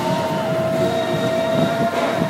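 A horn sounding one long steady note for about two seconds, over the chatter of a street crowd.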